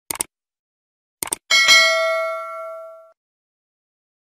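Subscribe-button animation sound effect: a short click, then two quick clicks about a second later, followed by a notification-bell ding that rings out and fades over about a second and a half.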